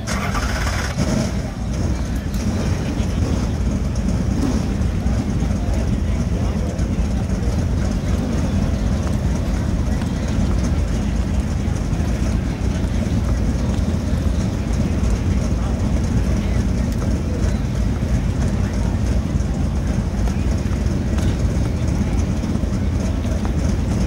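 Several dirt late model race cars' V8 engines running at low speed as the cars roll in line, a steady deep rumble.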